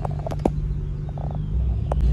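Low, steady rumble of a car's engine and road noise heard inside the cabin, with a few sharp clicks near the start and one near the end.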